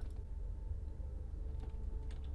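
A steady low hum with faint background hiss, a pause between narrated sentences, with a faint click or two.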